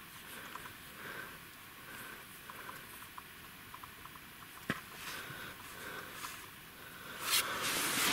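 Faint handling and rustling noise as a find is held and moved over loose soil, with one sharp click about halfway through and a louder rustle near the end.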